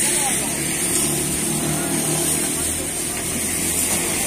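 A motor hums steadily, with a constant high hiss over it and voices talking in the background.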